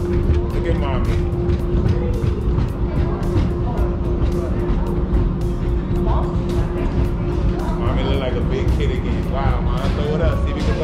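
Square-wheeled tricycles rolling over a ridged plastic track: a continuous low rumble with rapid knocks, under music with a steady held note and some voices.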